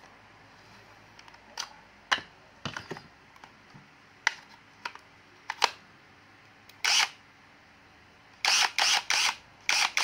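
Plastic clicks and knocks from a National EZT108 12V cordless drill being handled and its battery pack fitted, scattered through the first seven seconds. Near the end come four louder short bursts in quick succession.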